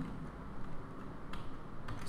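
Two faint computer keyboard keystrokes, about a second and a half in and again near the end, over a low steady room hum.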